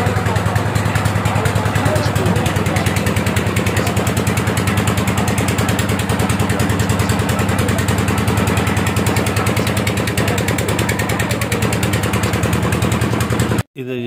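A single engine running steadily at a fast, even beat, with a strong low hum. It cuts off suddenly near the end.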